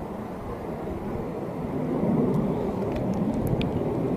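Low, steady outdoor rumble that swells about two seconds in, with a few faint clicks in the second half.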